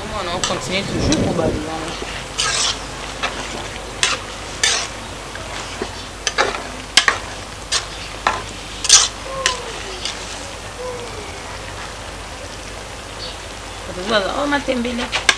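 A metal spoon stirring a large aluminium pot of cooking leafy greens, with irregular clinks and scrapes of the spoon against the pot over a steady sizzle.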